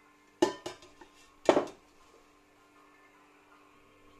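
Stainless steel cooking pot clanking as it is handled and set down: a few sharp metal knocks in the first couple of seconds, the loudest about a second and a half in.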